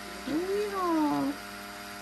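Handheld stick blender running steadily, submerged in a deep pot of cold-process soap batter. A cat meows once over it, a single call of about a second that rises then falls in pitch.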